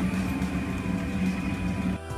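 Industrial sewing machine running with a steady hum, then cutting off suddenly at the end.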